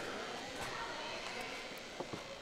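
Faint ambience of a large indoor hall: a steady low wash of background noise with a few faint knocks, between stretches of commentary.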